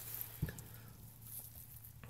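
Quiet background with a faint steady low hum and one soft click about half a second in.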